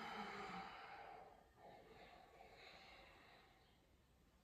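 A person's long, soft exhale, breathed out in time with a yoga movement, fading away over the first second or two.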